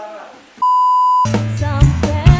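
A steady 1 kHz beep tone lasting about half a second, of the kind edited into a video. It cuts off abruptly and the band comes in: Javanese dangdut koplo with kendang hand drums, keyboard and bass.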